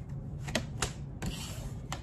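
A few sharp, light clicks spread across a couple of seconds, over a faint low hum.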